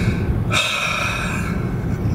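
A person's breath: a drawn breath, then a heavy sigh of about a second starting about half a second in, over the steady road rumble inside a moving car.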